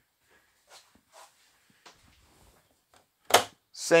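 A few faint knocks and rustles, then one short, sharp, loud click about three seconds in from the latch on a fold-down RV bunk's overhead cabinet face.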